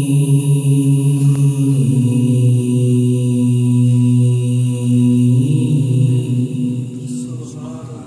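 A man reciting the Quran in the melodic tilawat style into a microphone, drawing out a long sustained phrase. The pitch steps down, then bends up and down, and the voice trails off about seven seconds in.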